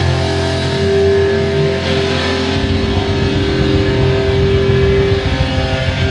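A live rock band on amplified electric guitars and bass holds long sustained notes. A low drone drops away about two and a half seconds in, and a higher held note carries on until near the end.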